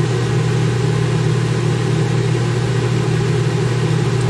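Duo-Therm Cool Cat rooftop RV air conditioner just starting up: a loud, steady machine hum with an even rush of air.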